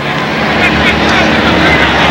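Large stadium crowd, a steady loud din of many voices.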